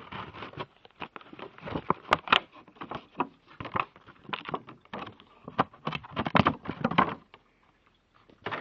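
Irregular crackles and clicks of objects being handled close to the microphone, stopping shortly before the end.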